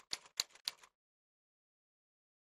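Typewriter keystroke sound effect, one sharp clack for each character of on-screen text as it types out: three strikes about a quarter second apart, stopping a little under a second in.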